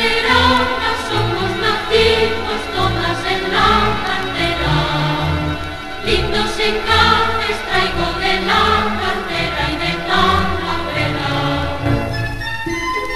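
Zarzuela music: a symphony orchestra playing a lively passage with a steady, accented beat, with a mixed choir singing along.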